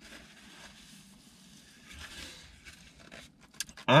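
Faint rustle of a paper napkin rubbed over the mouth and hands, swelling a little about halfway through, with a few small clicks near the end.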